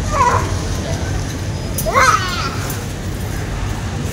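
Supermarket background sound: a steady low hum with other shoppers' voices, including a brief high rising call about two seconds in.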